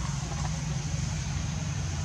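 Steady low hum of a running engine over a constant background hiss.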